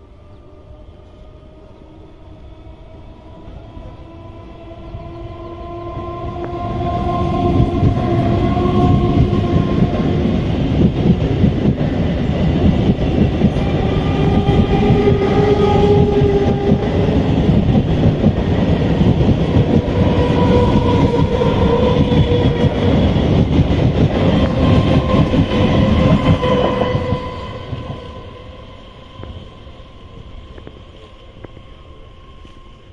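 Old-model EMU electric local train accelerating past at close range: a whine from its traction motors climbs in pitch as it nears, and the rumble and clatter of wheels on rail swell to loud for about twenty seconds while the coaches pass, then fade quickly near the end.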